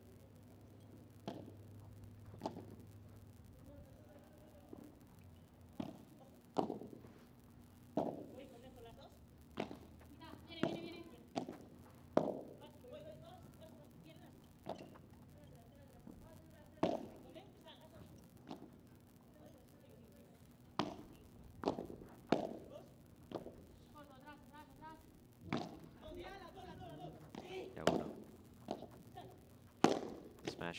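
Padel ball struck back and forth with padel rackets in a long rally: sharp, hollow hits and bounces, irregularly about one every second or two, with brief voice sounds between shots.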